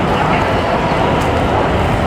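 Steady, loud din of a crowded exhibition hall: a low rumbling background of many voices and hall noise, with no single sound standing out.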